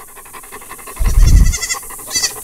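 Goat kid bleating faintly and thinly in short calls, with a dog panting close by. A short, loud low thump about a second in.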